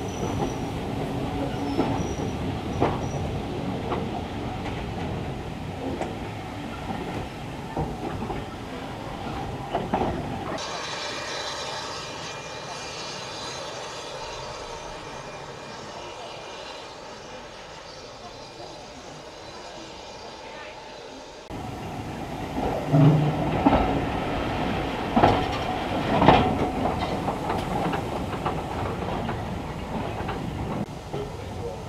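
Railway carriage running on the line, heard from on board: a steady rumble with knocks and clanks from the wheels and couplings. The sound drops to a quieter, thinner background for about ten seconds in the middle, then the rumble returns with several louder jolts near the end.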